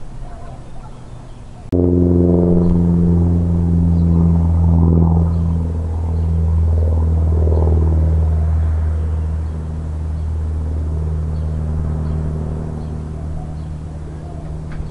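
A steady low machine hum starts suddenly about two seconds in and keeps running, easing slightly later on.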